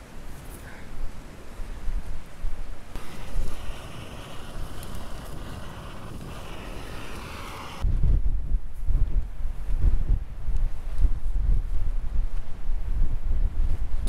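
Wind buffeting the microphone outdoors, a gusting low rumble. About eight seconds in it changes abruptly and becomes much louder and deeper.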